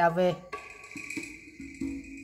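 Music playing from a Kenwood CD player through the hi-fi speakers at the very start of a track: a quiet opening of soft, separate notes over a steady high tone.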